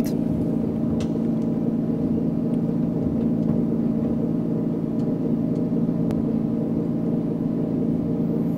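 Simulated single-engine piston aircraft engine sound from the flight simulator's sound system: a steady, even drone at reduced power during the descent, with a couple of faint clicks.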